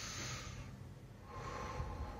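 A man breathing deeply in and out through the mouth in a diaphragmatic breathing exercise: two long rushes of air with a short pause between them about a second in.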